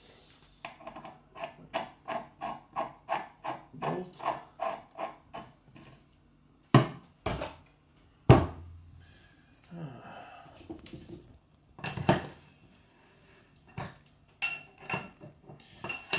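Metal grinding discs in their clamp plate and bolt being handled: an even run of light metallic clicks, about three a second, as the clamp nut is run down by hand, then two heavy thumps as the disc stack is tipped onto its edge. Ringing metal clinks come near the end.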